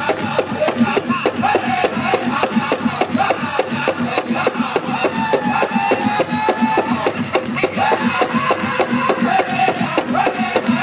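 Powwow drum group singing a men's chicken dance song: a big powwow drum struck in a fast, steady beat under the singers' voices.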